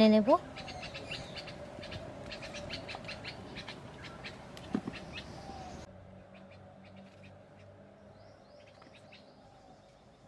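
A knife pressing through soft biscuit dough onto a wooden board, with light clicks and taps, against an outdoor background of short bird chirps. There is a brief louder sound a little before the five-second mark.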